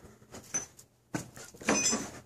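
A man's voice in a brief hesitant murmur between phrases, with a few faint clicks just before it.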